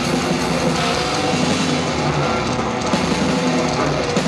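Death metal band playing live: distorted electric guitars, bass and a drum kit in an instrumental passage, with no vocals.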